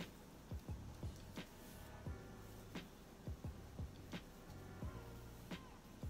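Quiet background music: a beat of deep kick drums that drop in pitch, sharp snare or hi-hat clicks, and a low sustained bass line.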